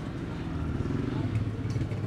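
A steady low engine hum, like a motor vehicle running, under faint background voices.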